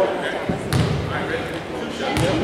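A basketball bouncing on a hardwood gym floor, a couple of dull thuds about half a second to a second in, as the free-throw shooter dribbles, with voices in the gym behind.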